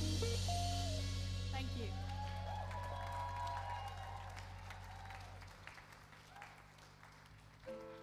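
The band's final chord rings out and fades away over several seconds, under light audience applause and a cheer. Near the end a keyboard starts playing soft held chords.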